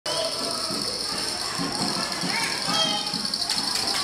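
Indistinct voices and chatter of people in a busy hall, over a steady high-pitched hiss.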